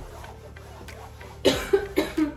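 A person coughing: a quick run of three or four coughs starting about one and a half seconds in.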